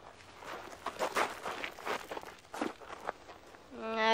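Scuffling footsteps on the ground: a run of irregular shuffles and steps starting about half a second in, as the boys jostle one another.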